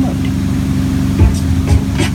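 Tow boat's engine running at a steady drone under the wash of the wake. About a second in, the low bass beats of a song begin over it.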